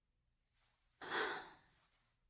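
A single sigh about a second in: a breathy, unvoiced exhale that fades out over about half a second.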